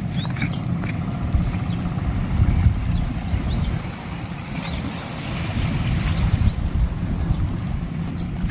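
Wind buffeting the microphone as a wavering low rumble, with short rising bird chirps repeating every second or so above it.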